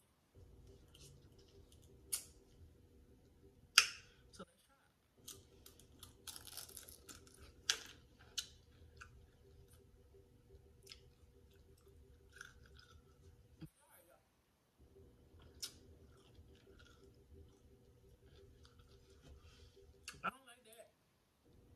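Faint crunching and chewing of a dill pickle spear topped with a Takis rolled tortilla chip: sharp crunches come a few seconds apart, the loudest about four seconds in, over a faint steady hum.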